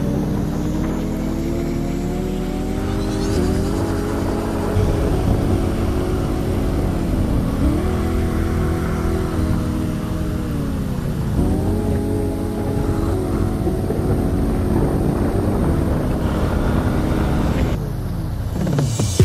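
Scooter engine heard from the rider's seat while cruising, its note climbing and holding with the throttle and dipping twice before picking up again, over a steady low rumble of wind and road noise.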